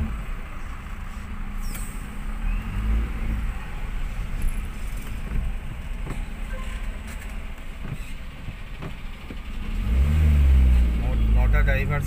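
Low engine and traffic rumble heard from inside a car waiting in a queue of trucks. The rumble swells louder near the end as the vehicles move off.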